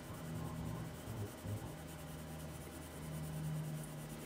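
Colored pencil rubbing faintly on paper in small circular strokes, blending green shading, over a faint low hum.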